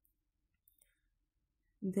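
Near silence with faint room tone, broken by a faint click about two-thirds of a second in; speech begins near the end.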